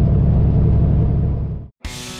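Steady low rumble of a semi truck's diesel engine and road noise heard inside the cab at highway speed. It cuts off suddenly near the end, and after a short gap rock music with guitar and drums starts.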